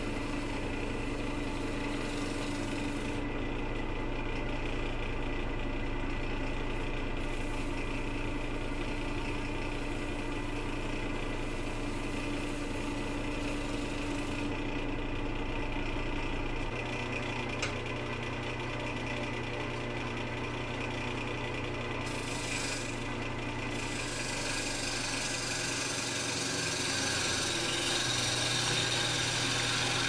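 Wood lathe running steadily with a maple log spinning on it, the motor humming at a fixed pitch while a spindle roughing gouge cuts shavings from the log; the sound changes a little and drops in the low end about halfway through.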